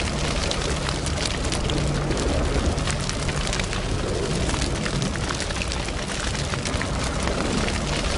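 Fire sound effect: flames burning with a steady rushing noise, a low rumble underneath and scattered sharp crackles.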